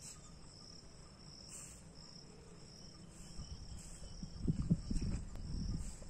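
Insects chirping in a continuous high, pulsing drone that swells louder about every second and a half. A low rumble builds up in the second half and is the loudest sound there.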